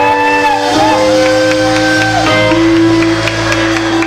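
A live band with electric guitar playing long held notes over a steady bass note, with a few bending higher notes on top.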